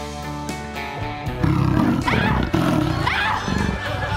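Light comedy background music, joined about a second and a half in by a loud, rough animal roar for a gorilla that rises in pitch twice before fading near the end.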